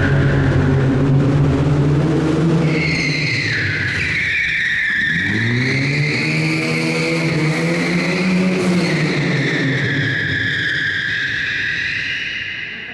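Lada sedan's engine revving hard as the car slides sideways, with long, wavering tyre squeal on a concrete floor from about three seconds in. The engine note drops about five seconds in, then climbs again.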